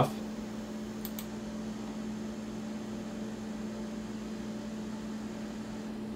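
Small 12-volt DC cooling fans on a powered 3D-printer control board running with a steady low hum and whir, with a faint click about a second in.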